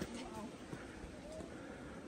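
Quiet, even trickle of a shallow creek running over rock, with a few faint footstep taps.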